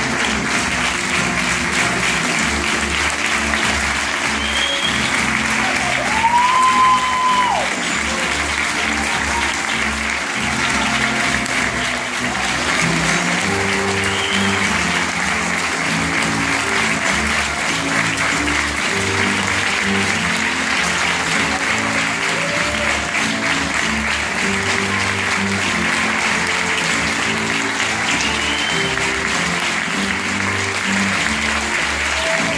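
Theatre audience applauding steadily over music, with one loud high-pitched cry from the crowd about six seconds in and a few fainter ones later.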